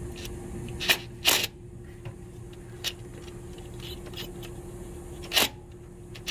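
A few sharp metallic clicks and knocks of a hand tool being worked against an engine's timing-cover bolt, four in all and irregularly spaced, the second the loudest, over a faint steady hum. The bolt is not coming loose.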